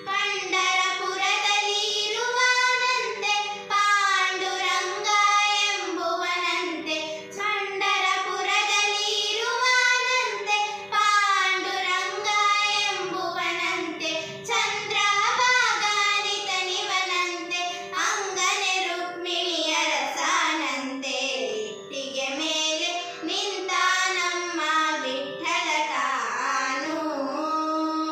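Two girls singing a Carnatic devotional song together, their voices gliding through ornamented phrases over a steady drone.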